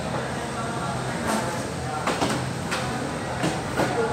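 Indoor security-checkpoint ambience: a steady low hum under faint voices, with several short knocks and clatters from about a second in, as bags and plastic trays are handled on the screening table.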